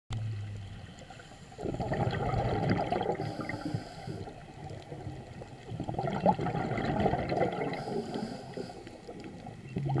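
A scuba diver's exhaled bubbles gurgle in bursts of two to three seconds, about every four to five seconds, heard underwater through the camera housing. Between the bursts there is a faint hiss from the regulator as the diver breathes in.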